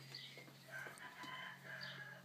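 Faint bird calls in the background: a short high chirp near the start and a longer, lower call with several tones in the second half, over a low steady hum.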